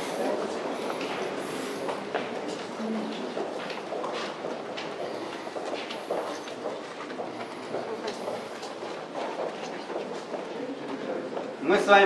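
Footsteps of a group of people walking along a concrete tunnel, many irregular steps, with indistinct murmured chatter in the group. Clear speech starts right at the end.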